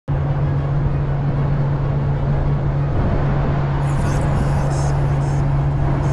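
Diesel semi-truck engine idling steadily, a constant low hum.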